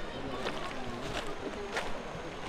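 Shallow river running over a stony bed, a steady rush of water, with faint voices in the background and two brief clicks.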